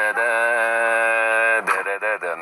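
A person's voice holding one long, steady sung note for about a second and a half, breaking off near the end into short voiced sounds.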